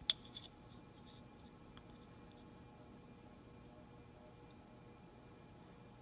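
One sharp metal click right at the start, then a few faint ticks, as a dial caliper's jaws close on a snap (telescoping) bore gauge; after that, quiet room tone with a faint steady hum.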